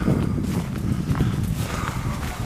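Footsteps of a person walking along a dirt path strewn with fallen leaves: an irregular run of steps and scuffs.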